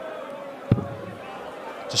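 A steel-tip dart striking a Winmau Blade 6 bristle dartboard: a single sharp knock about two-thirds of a second in, over a steady low murmur of the arena crowd.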